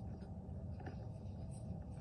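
Faint, steady low rumble with a few light scratchy ticks.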